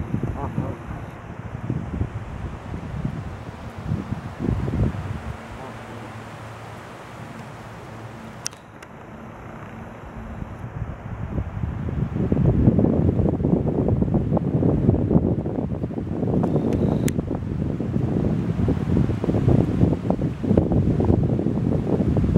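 Wind rumbling on the microphone, growing much louder about halfway through.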